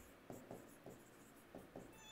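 Faint, short strokes of a marker writing on a whiteboard, a few separate scratches and taps.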